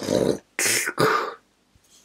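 A man's wordless, breathy vocal sounds of exasperation: three short bursts in quick succession within the first second and a half.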